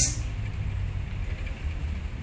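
A steady low rumble under a faint hiss, with no speech: background room noise.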